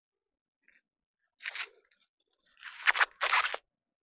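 Green husk being torn back by hand from an ear of fresh sticky corn. There is a short rip about one and a half seconds in, then a longer, louder stretch of ripping and crackling in the last second and a half.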